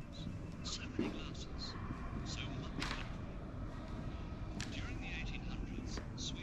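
Indistinct hushed voices and whispering with frequent hissing 's' sounds, over a steady low rumble, and a short knock about a second in.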